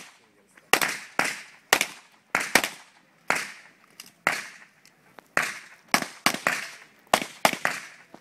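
Handgun shots fired in quick, uneven strings, about sixteen shots in eight seconds, some as pairs a fraction of a second apart, each with a short echoing tail.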